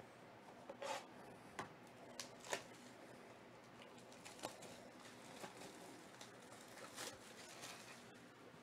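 Plastic shrink-wrap being picked at and torn off a cardboard trading-card hobby box, faint crinkling and tearing in a few short bursts, the loudest about two and a half seconds in.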